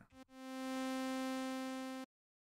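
AudioRealism reDominator software synthesizer playing a single held note, rich in overtones. It swells in over about half a second, sags slightly as the envelope's decay stage works on it, then stops abruptly.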